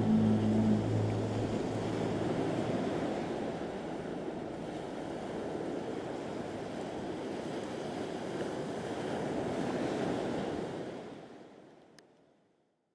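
Sea surf washing in a steady rushing wash that swells and eases, fading out to silence near the end.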